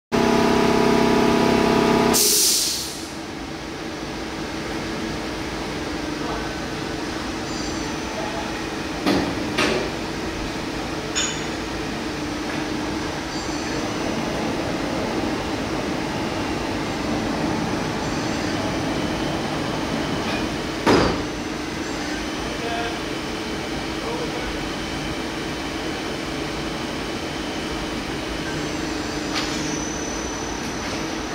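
A loud steady tone for about two seconds, then the steady hum of a powered-on Doosan Puma 2600 CNC lathe standing at rest, with one constant tone in it. A few sharp knocks break in, two close together about nine seconds in and a louder one past the twenty-second mark.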